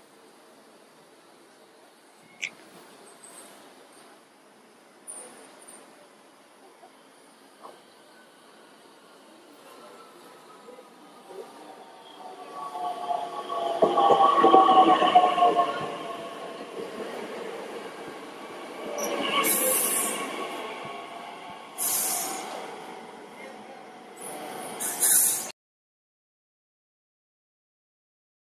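A red electric regional multiple-unit train running in along a station platform. It swells to its loudest about halfway through, and its motor whine falls slowly in pitch as the train slows. In the latter part there are three short hisses.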